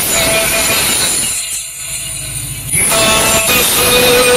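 Loud, distorted electronic dance music played through a DJ truck's loudspeaker stack, thinning out to a filtered sound for about a second and a half in the middle before the full sound returns.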